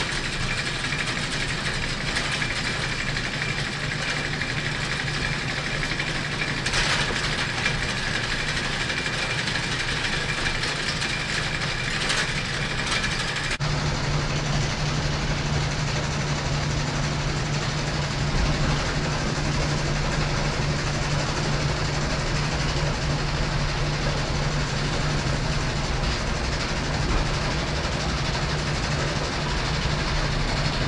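Hay elevator running steadily while bales go up into the hay mow. A faint high whine runs with it until about halfway, when the sound changes abruptly and a steady low hum takes over.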